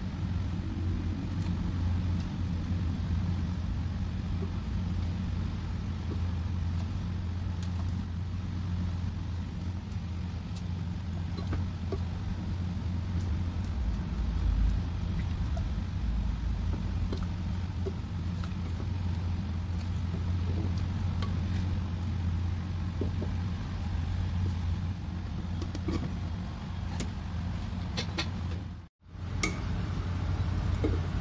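Steady low hum while lemon and ginger slices simmer in water in a pot on the stove, with a few light knocks of a wooden spoon against the pot, most of them near the end. The sound cuts out for a moment just before the end.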